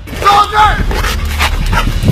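Pit bull giving a few short, high yips and barks during protection work, with a person's voice mixed in.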